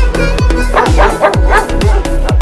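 Electronic dance music with a steady beat, and a dog giving a few short yips around the middle.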